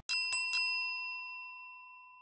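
A bell-like chime struck three times in quick succession, then ringing on and fading away over about a second and a half. It is an edited transition sting over the show's title card.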